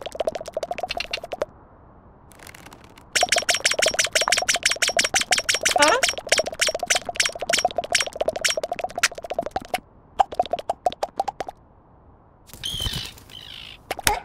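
Cartoon sound effect of a bird pecking rapidly: fast runs of sharp, pitched taps in three bursts, the middle one lasting several seconds, with a short sliding whistle partway through. A brief, different sound comes near the end.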